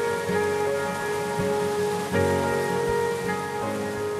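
Music with sustained chords that change about two seconds in, over a steady hiss of running, splashing water.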